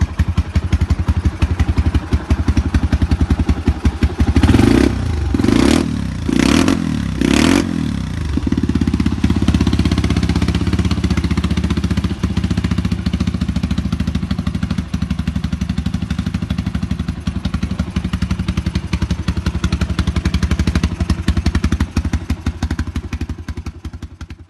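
Custom-built Suzuki 250 cc scrambler motorcycle idling through its aftermarket under-seat exhaust. Four quick throttle blips come in a row a few seconds in, then the engine settles back to a steady idle.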